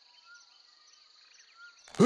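Faint nature ambience: a few soft short chirps with faint high insect-like ticking.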